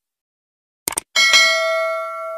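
Subscribe-button animation sound effects: a quick double mouse click about a second in, then a bright bell ding, struck twice in quick succession, that rings on and slowly fades.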